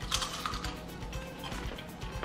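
Background music with a steady beat, over crunching bites into crispy spicy fried chicken strips.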